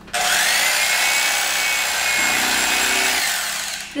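Electric carving knife running, its reciprocating blades sawing through a sandwich loaf of Italian bread. It switches on abruptly just after the start, runs steadily with a high whine, and winds down near the end.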